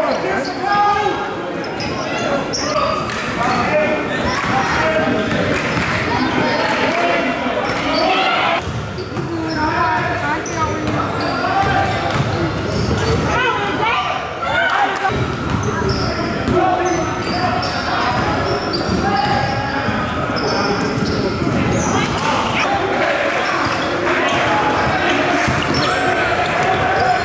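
Live sound of a basketball game in a gym: the ball bouncing on the wooden court, with players and spectators calling out throughout.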